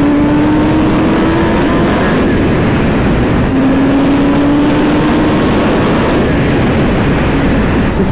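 Sport motorcycle engine running hard at highway speed, its pitch rising in two long pulls, the second starting about halfway through. Heavy wind rush on the microphone runs under it throughout.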